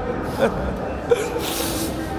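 A sharp, hissing gasp of breath, with a couple of brief clicks before it, over steady background noise.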